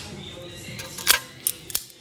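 Locking pliers clicking on the steel cotter pin and castle nut of a tie rod end: a few sharp metal clicks, the loudest about a second in, as the jaws grip and slip on the rusted pin.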